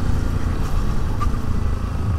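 Motorcycle engine running steadily while being ridden along a street, a steady low sound with no sudden changes.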